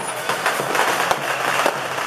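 A string of firecrackers going off in rapid crackling pops, with one louder bang a little past a second in.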